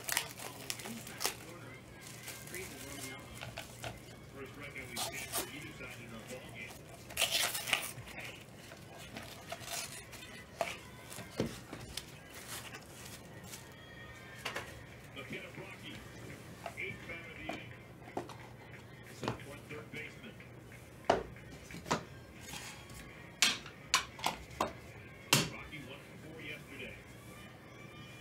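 Clear plastic trading-card holders and card packaging handled on a table by gloved hands: soft rustling broken by sharp plastic clicks and clinks, with a quick run of clicks near the end.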